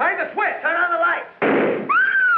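A single pistol shot about one and a half seconds in, a sudden bang after some talk, followed at the very end by a high cry.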